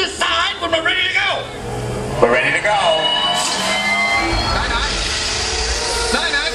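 Sci-fi film sound effects of a time machine launching. Voices cry out at first, then a hiss with steady high whining tones builds, and a deep rumble comes in about four seconds in.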